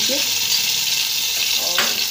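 Garlic-ginger paste frying with browned onions and whole spices in hot oil, a steady sizzle.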